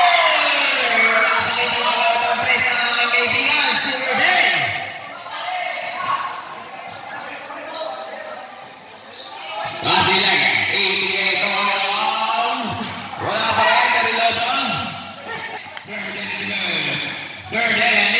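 Basketball dribbling and bouncing on a hard court during live play, under shouts and talk from players and spectators, echoing in a large covered gym.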